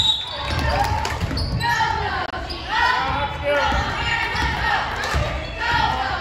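Basketball dribbling on a hardwood gym floor with repeated bounces, under voices calling out across a large, echoing gym.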